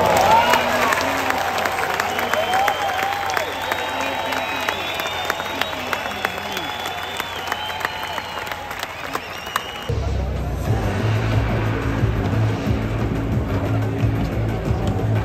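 Tennis stadium crowd cheering, shouting and clapping. About ten seconds in it cuts to background music with a steady low beat.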